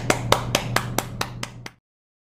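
One person clapping, about five claps a second, growing fainter and then cut off suddenly near the end.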